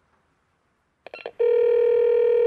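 Telephone sound effect: a few quick keypad beeps about a second in, then a loud, steady single-pitch ringing tone as an outgoing call rings through.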